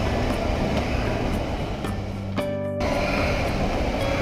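Shopping-mall background din with music playing, steady throughout, and a short buzzy tone about two and a half seconds in.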